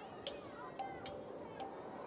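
Steady ticking, roughly two ticks a second, over faint children's voices.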